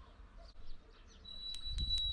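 A small metal bell rings a little past halfway through, one steady high ring with a few sharp clicks of the clapper over it.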